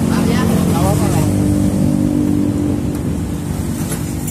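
A motor engine running close by with a steady low hum. It swells at the start and eases off through the second half.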